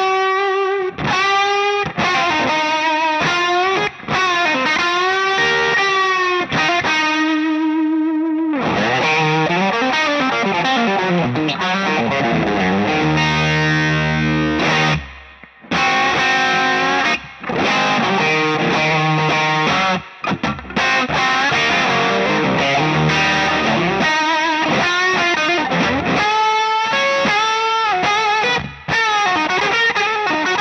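Suhr T-style electric guitar in C standard tuning played through a Cornerstone Gladio overdrive pedal with its gain turned all the way up: heavily distorted riffs and chords. The playing breaks off briefly about halfway through.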